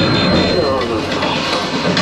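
The lagoon show's soundtrack plays loud over outdoor loudspeakers as a dense mix with a steady low rumble underneath.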